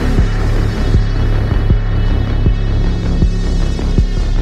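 Background electronic music with a deep, droning bass and a steady beat, about one stroke every three quarters of a second.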